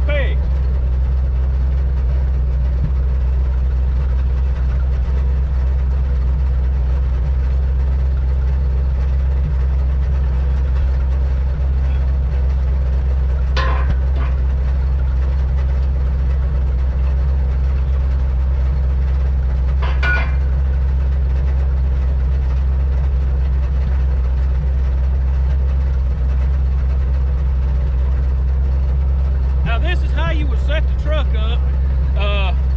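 Side-loader log truck's engine idling steadily, with two brief knocks, one about halfway through and one about two-thirds in.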